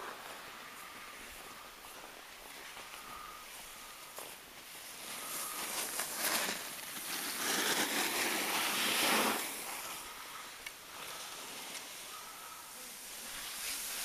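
Skis hissing and scraping on packed snow, mixed with wind on the microphone. A few short scrapes come through, and the noise swells for a couple of seconds in the middle.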